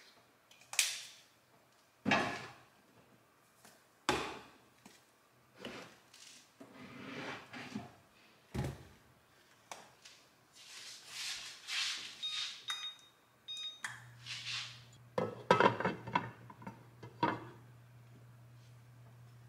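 Kitchen handling sounds: scattered knocks, clinks and thunks of seasoning containers and cookware being picked up and set down on the counter and stove, busiest near the end. A low steady hum comes in about fourteen seconds in.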